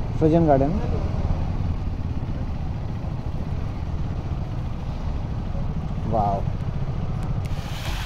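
KTM motorcycles running at low speed as the group rolls through a gateway, a steady engine rumble with a fast even pulse. Near the end it gives way to the hiss and splash of water pouring into a pool.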